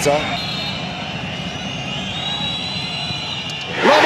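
Football stadium crowd making a steady din with whistling. Near the end the crowd suddenly bursts into a loud roar as a penalty goes in.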